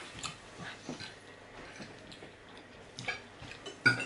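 Metal forks clicking and scraping on ceramic dinner plates as people eat, a few scattered clinks with the loudest near the end.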